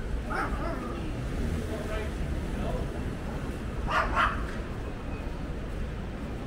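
A small dog yipping and barking, loudest in two quick sharp barks about four seconds in, over a steady low city rumble.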